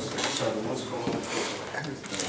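A man's lecturing voice, talking continuously in a small, echoing room, with hissy, distorted-sounding recording.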